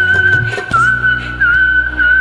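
A melody whistled with a slight waver in pitch, dipping briefly twice, over a karaoke backing track with a steady bass and percussion beat.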